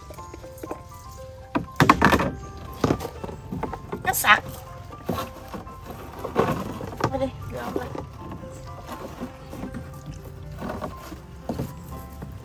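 Background music with thin held notes, over knocks and rustles of a netting fish trap being handled and shaken in a wooden boat, loudest about two and four seconds in.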